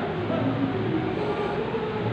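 A man chanting a Sanskrit invocation in long, slowly wavering held tones.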